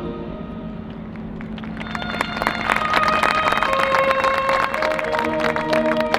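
Marching band and front ensemble playing: a held chord fades away, then quick percussion taps build over a line of held notes stepping down in pitch, and a new chord comes in near the end.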